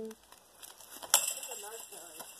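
A single sharp click a little over a second in, with a short hiss trailing after it, then a brief pitched vocal sound.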